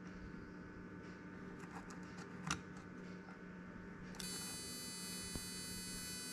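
The original xenon headlight ballast of a VW Touareg, powered on the bench, sets up a high-pitched whine about four seconds in as it fires its HID bulb. Described as "fiept", the whine shows the supposedly faulty ballast works and is not defective. A steady low hum runs underneath, with a faint click about two and a half seconds in.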